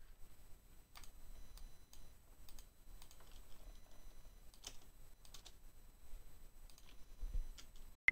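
Faint, irregular clicks of a computer mouse and keyboard, about one a second, as tracks and a preset file are selected on screen.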